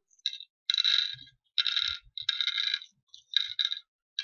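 Small red seeds dropped by the handful into the hollow pits of a wooden pallankuzhi board, rattling and clicking against the wood and each other in about five short clusters as the pits are filled one after another.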